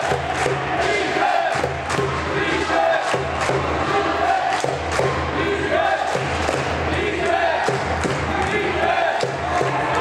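Music with a steady beat, about two beats a second, with voices, mixed with the echoing sounds of an indoor basketball game.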